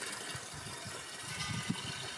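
Fuel poured from a can through a spout into a ride-on mower's plastic fuel tank: a steady liquid pour.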